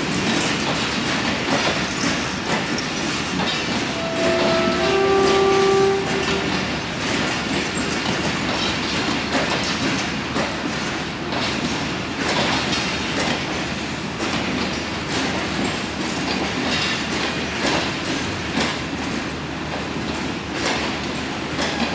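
Pakistan Railways express passenger coaches rolling past on the station track, the wheels clicking irregularly over rail joints over a steady rumble. About four seconds in, a train horn sounds for roughly two seconds, the loudest moment.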